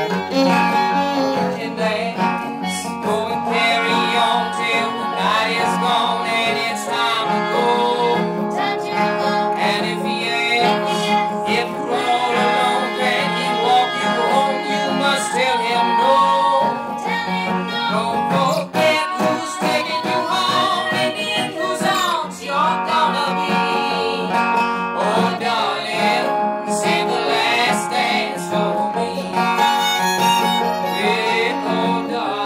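Old-time string band playing live: fiddle, acoustic guitar and banjo together in a steady, continuous passage.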